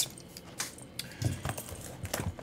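Faint clicks and rustles of a cardboard trading-card box being picked up and turned over in the hands, a few light taps scattered through the quiet.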